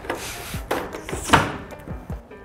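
A wooden drawer is rummaged, with tools shifting inside, then a sharp thunk a little past the middle as it is pushed shut. Background music plays underneath.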